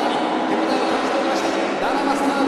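A pack of auto race motorcycles running at racing speed, their engines giving a steady, even drone, with a voice heard over it.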